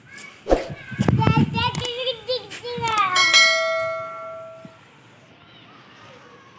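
High-pitched voice sounds with a few sharp clicks, then a single bell ding about three seconds in that rings out and fades over about a second and a half.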